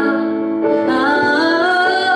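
Woman singing a slow Swedish ballad to her own grand piano accompaniment; the piano sustains a chord at first and her voice comes in about half a second in with long held notes.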